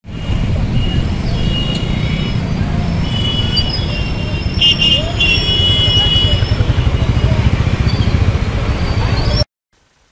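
Many motorcycle and scooter engines running together in a street rally, a heavy low rumble with voices and high steady horn tones over it. It cuts off abruptly shortly before the end.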